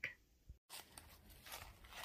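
Near silence: faint background tone, broken off by an abrupt dead gap about half a second in, with only a few very faint small sounds afterwards.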